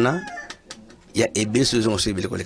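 A person's voice speaking in short phrases, with a quieter pause of about a second between them, and a fowl-like animal call in the background.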